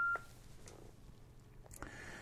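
The end of a single steady electronic beep from a Yaesu FTM-500D transceiver as its knob is pressed to confirm the firmware update, stopping with a click just after the start. Low room noise follows, with a faint click near the end.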